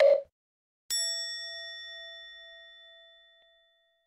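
A short pop, then about a second in a single bright bell-like ding that rings with several clear tones and fades away over about three seconds.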